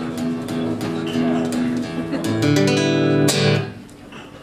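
Acoustic guitar picked note by note, single notes ringing out, then a chord struck a little over three seconds in that rings and dies away.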